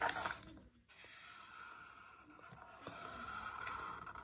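Felt-tip marker rubbing on paper as ovals are traced over: faint scratching strokes, with a louder stroke in the first half-second and the strokes growing a little louder near the end.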